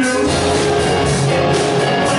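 A live rock band playing loud and steady, with electric guitars and a drum kit.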